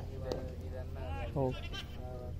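A cricket bat strikes the ball once, a single sharp knock, followed by a man's 'oh' and a high, wavering shout as the batsmen run a single.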